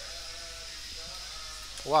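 Faint steady background hiss, then near the end a man's voice asking a drawn-out 'why?' that rises and then falls in pitch.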